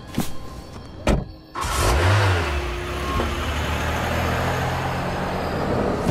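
A couple of sharp clicks, then a car engine starts suddenly about one and a half seconds in, swells briefly and settles into steady running.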